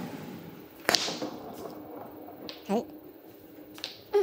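A carom billiards shot: the cue tip strikes the cue ball with one sharp click about a second in. A few fainter clicks follow as the rolling ball makes contact further down the table, the last near the end.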